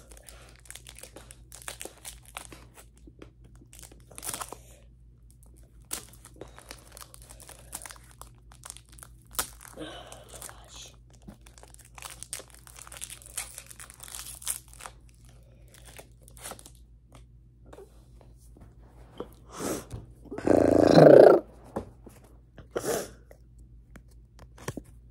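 Pokémon trading cards being handled and flipped through: scattered soft clicks, rustling and crinkling of card stock and pack foil. Near the end, a brief louder rubbing noise as a card is brought right up to the microphone.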